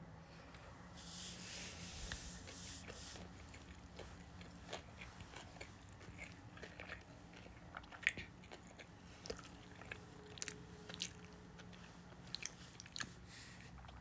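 Faint close-up eating sounds of a person chewing sushi: scattered soft wet mouth clicks and smacks, with a brief soft hiss about a second in.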